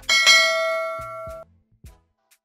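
A bell-like ding sound effect from an animated subscribe-button overlay, struck once and ringing with several pitches for about a second and a half before it cuts off. Two soft low knocks follow near the end.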